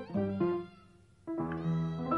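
Music: a melody of short held notes that pauses briefly about halfway, then resumes.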